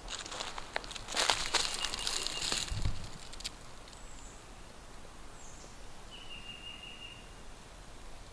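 Footsteps crunching and rustling in dry leaf litter on the forest floor for the first three seconds or so, then a quieter outdoor background with a few faint, high, thin chirps.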